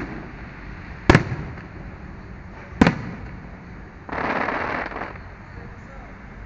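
Aerial fireworks shells bursting: three sharp bangs, one right at the start, one about a second in and one near three seconds in, each trailing off in a short rumble. Near the end comes about a second of louder rushing noise.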